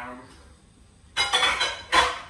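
Dishes and utensils clattering in a kitchen sink for under a second, ending in one sharp clink.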